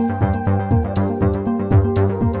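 Live electronic jam on an Elektron Analog Four mk2 analog synthesizer sequenced by Korg SQ-1 step sequencers. A looping pattern of low notes that drop in pitch, about two beats a second, runs under short percussive ticks and held synth tones.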